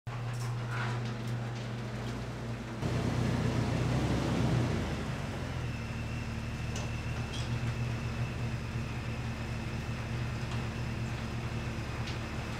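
Jeep engine running at low speed as the Jeep reverses into a garage: a steady low engine note that grows louder about three seconds in for a second or two, then settles back.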